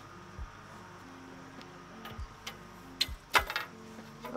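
Paramotor cage spars being pushed and tapped into the frame hoop's sockets: a few short knocks and clicks, the loudest near the end.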